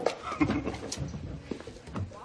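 Film soundtrack in a pause between lines of dialogue: low room background with a couple of sharp clicks or knocks, one right at the start and one about a second in.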